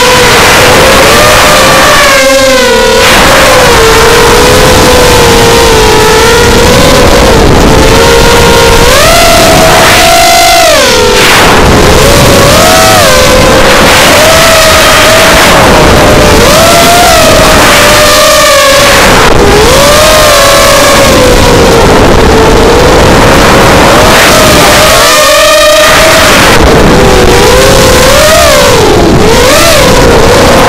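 Bantam 210 racing quadcopter's brushless motors and propellers whining loudly, the pitch rising and falling constantly with throttle and dropping sharply several times as the throttle is chopped, over steady rushing air on the onboard microphone.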